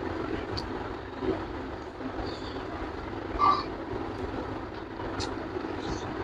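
Close-miked eating by hand: chewing and lip smacks, a few short wet clicks, the loudest about three and a half seconds in, over a steady low background rumble.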